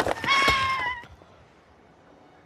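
Wounded baby dragon crying out: one held, pitched creature call about a second long, dropping slightly in pitch as it ends, with a soft knock midway.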